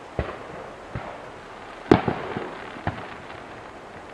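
Aerial firework shells going off in the distance: a string of about six separate bangs, the loudest a little before halfway through.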